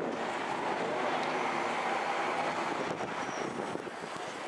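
Steady street traffic noise, with a heritage streetcar running along its track.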